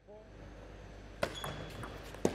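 Plastic table tennis ball clicking a few times on the table or a bat, the first and sharpest click about a second and a quarter in, over low hall noise.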